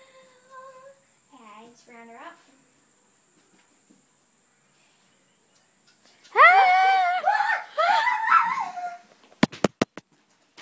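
A young girl gives a loud, high-pitched, wordless scream that starts about six seconds in and lasts about three seconds, wavering in pitch. It is followed near the end by a few sharp knocks.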